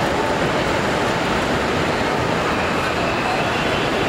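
Steady, loud background din at an airport terminal entrance: an even, unbroken wash of noise with no distinct events standing out.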